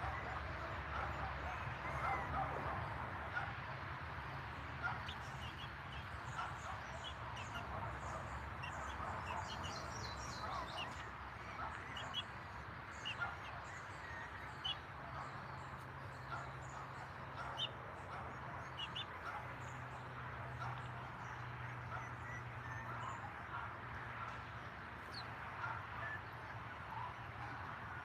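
Westie puppies giving occasional faint yips and whimpers, with short high chirps scattered through, busiest in the middle, over a steady low hum.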